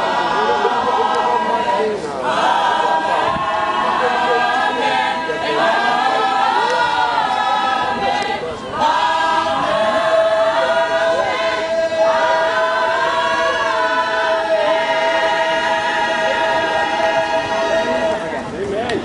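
A gospel choir singing together in several sung phrases, then holding one long note from about halfway through.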